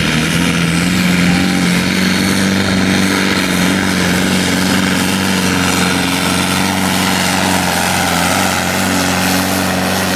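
Diesel engine of a sport-class pulling tractor running flat out under heavy load as it drags the weighted sled, a loud steady drone with no let-up.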